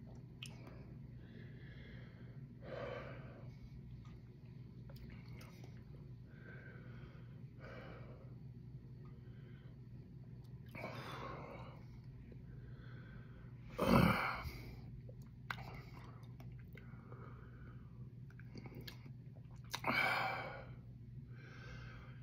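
A man's heavy breathing, sniffs and mouth sounds as he endures the burn of a superhot chocolate Primotalii pepper, with one sharp louder noise about two-thirds of the way through and a louder exhale near the end. A faint steady low hum runs underneath.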